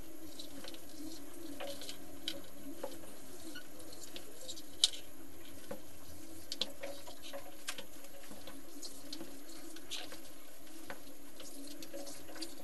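Scattered small clicks and scratchy rustles over a steady low hum, with one sharper click about five seconds in: handling noise from marking fabric on a floor with chalk and a tape measure.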